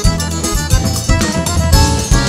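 Live forró band playing an instrumental passage: an accordion carries the held chords and melody over a steady bass-drum beat.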